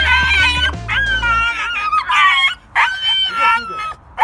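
A black puppy whining in a run of about six high-pitched yelping calls, each under a second, most sliding a little down in pitch.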